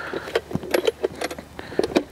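Light metallic clinks and rattles from a TakTable camping table's folding metal leg frame as it is handled and the legs are fitted into place; a handful of short, irregular clicks.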